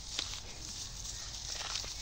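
Footsteps and donkey hooves crunching on dry straw stubble, a few scattered crunches over a steady outdoor hiss.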